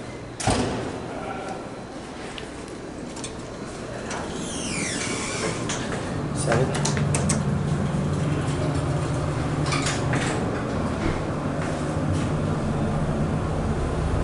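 Modernized traction elevator: a knock about half a second in, then the sliding doors running, then the car starting off with a steady low hum that grows and holds, with a few sharp clicks along the way.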